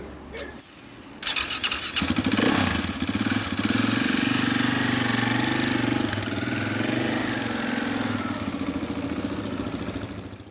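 Husqvarna 701's single-cylinder engine is started about a second in and runs steadily as the bike is ridden away, its sound easing slightly toward the end.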